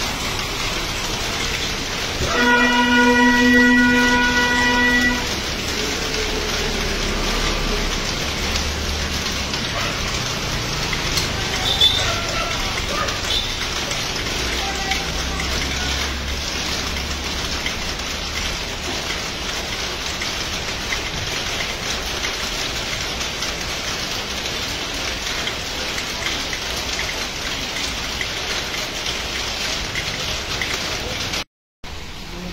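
Steady rain falling, with a vehicle horn sounding one long, even note for about three seconds near the start.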